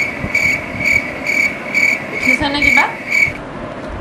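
A high-pitched chirp repeating evenly about twice a second, like a cricket's, stopping shortly before the end, with a brief voice sound partway through.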